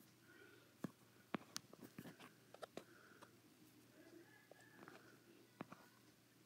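Near silence in a quiet room, broken by a dozen or so faint, sharp clicks and ticks at irregular intervals, most of them between one and three seconds in.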